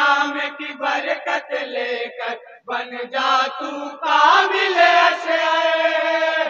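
A group of men singing an Urdu naat together through a microphone, a chant-like devotional melody, with a short break about two and a half seconds in.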